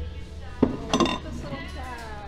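A cut-glass dish and the ceramic plate it rests on clink together twice as they are set down on a shelf, about half a second and one second in, the second clink ringing briefly.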